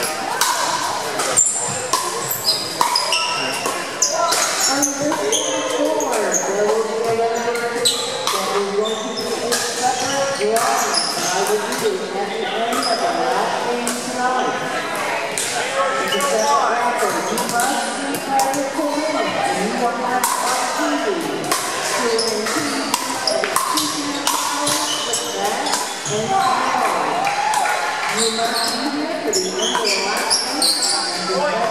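Pickleball paddles striking plastic balls, many sharp pops from several courts at once, echoing in a large gym hall over the chatter of players' voices.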